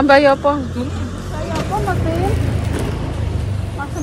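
Steady low rumble of road traffic under people talking, with a short spoken word at the start and quieter voices about halfway through.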